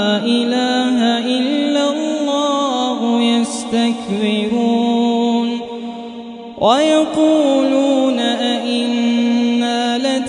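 A man's voice chanting Quran recitation in melodic tajweed style, with long held notes sliding between pitches. A short breath pause comes about six seconds in, and then a new phrase begins on a rising note.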